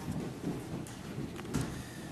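Room noise in a hall: a low steady rumble with a few faint clicks and rustles.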